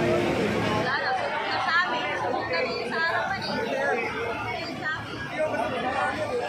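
A crowd of bystanders talking over one another: many overlapping voices with no single clear speaker.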